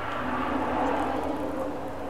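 A steady droning noise with a faint low hum, swelling a little about a second in and then easing.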